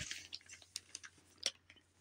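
A cardboard box being slid out of a woven storage box by gloved hands: a brief rustle, then a few faint scattered clicks and scrapes of cardboard.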